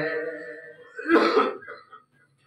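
A man's held sung note fades out, then he clears his throat once, a short rough burst about a second in, heard close on the microphone.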